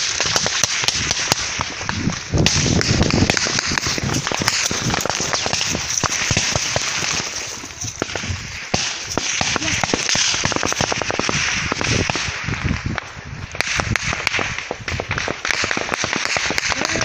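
Rapid, repeated gunshots cracking in quick succession, mixed with rustling as the phone is jostled near the ground.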